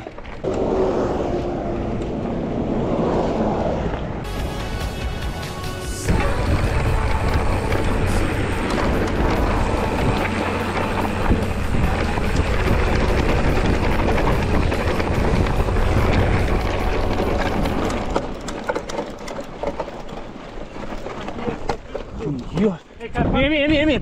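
Mountain bike ridden over loose slate gravel: tyres crunching and the bike rattling, mixed with wind on the body-worn camera's microphone. It is fullest in the middle and eases off near the end.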